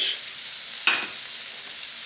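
Sliced onion, squash and bell pepper sizzling steadily in butter and olive oil in a stainless steel skillet, with one short click about a second in.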